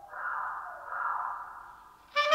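Clarinet blown as breathy air without a clear pitch, swelling twice between notes.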